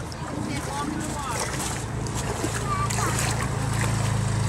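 Honda ATV engine running in river water, with water splashing around it; a steady low engine drone grows stronger in the second half. Shouting voices call out over it.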